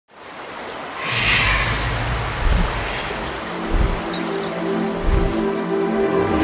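Cinematic intro music for an animated title: a noisy whoosh about a second in, a few deep booming hits, and a held low chord that sets in about halfway through.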